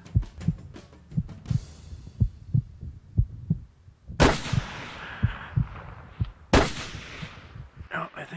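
A heartbeat sound effect thumping steadily, about one beat a second, then two shotgun slug shots, about four seconds and six and a half seconds in, each dying away over about a second.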